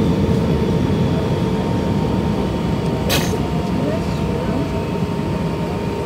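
Airbus A319 cabin noise while taxiing: the steady low rumble of the jet engines and the airframe, with a thin steady whine over it. A brief sharp noise comes about three seconds in.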